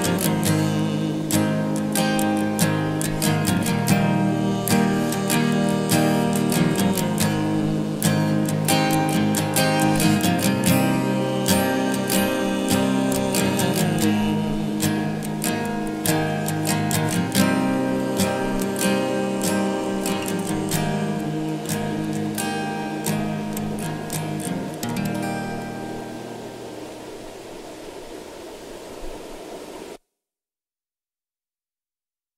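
Acoustic guitar strummed through the closing chords of a folk song. The strumming dies away over the last few seconds and then cuts off.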